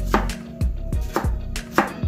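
Kitchen knife chopping vegetables on a cutting board, about four chops roughly half a second apart.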